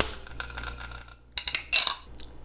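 A sharp click, then about a second and a half in a quick run of light metallic clinks with a short bright ringing tone, like coins or small metal tins knocking together.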